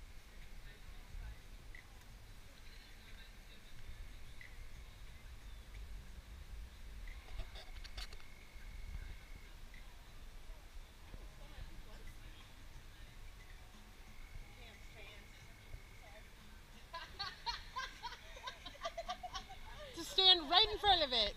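Faint outdoor night ambience with a low rumble, a thin steady high tone heard twice, and faint voices and laughter from people near the end.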